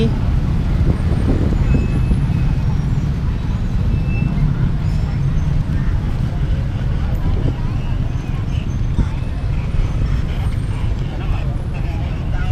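Busy street traffic of motorbikes and cars, a steady low rumble with a murmur of passers-by over it.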